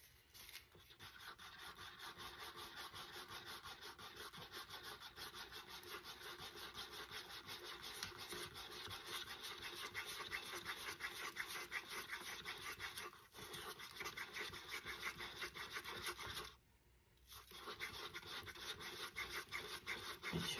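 Wooden craft stick stirring epoxy resin in a paper cup, making faint quick scraping strokes against the cup's sides and bottom as colorant is mixed in until it is no longer streaky. The scraping stops briefly about three quarters of the way through.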